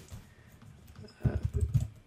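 Typing on a computer keyboard: a quick run of keystrokes starting about a second in.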